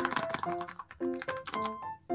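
Quick run of light taps and scratches from long fingernails and fingertips on paper craft-book pages, over background music of plucked notes.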